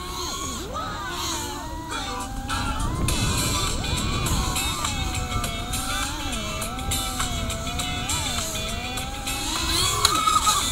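Brushless motors and 5-inch propellers of an FPV freestyle quadcopter, heard from its onboard camera: a whine that glides up and down in pitch as the pilot works the throttle.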